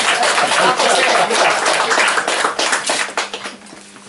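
Audience applauding in a small room, with voices talking over the clapping; the applause dies away near the end.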